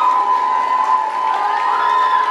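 Audience cheering and screaming, with one high-pitched scream held through most of it.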